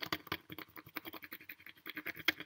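Colored pencil scratching on paper in quick, even back-and-forth strokes. The pencil is held on its side, shading over a coin under the sheet to raise a coin rubbing.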